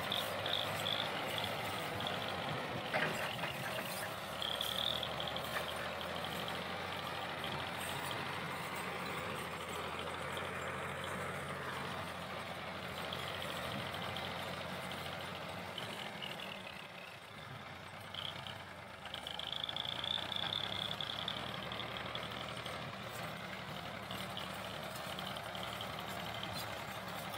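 Ford 4000 tractor engine running steadily as it pulls a heavily loaded trolley, dipping briefly about two-thirds of the way through. A high-pitched note comes and goes over it.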